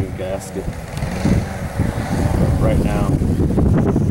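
Wind buffeting the microphone, a steady low rumble that rises and falls, with two brief snatches of a voice.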